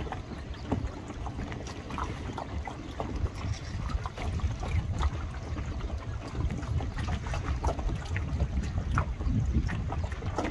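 Wind buffeting the microphone: a gusty low rumble that rises and falls unevenly, with scattered faint short clicks above it.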